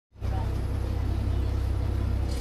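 Bus diesel engine running at low revs, heard from inside the front cabin as a steady, deep throb.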